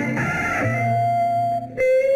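Old Tamil film song music: a steady bass line under a long held high note. The note breaks off briefly near the end and comes back a little lower.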